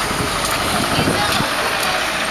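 Street-market hubbub: many people talking at once, with vehicle engine noise underneath.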